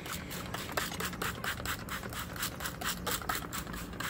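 Hand-pumped trigger spray bottle spraying a potted plant: a quick run of short, hissy spritzes, several a second.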